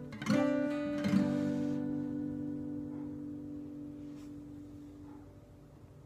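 Closing guitar chord of a song: strummed about a third of a second in and again at about a second, then left to ring and die away slowly.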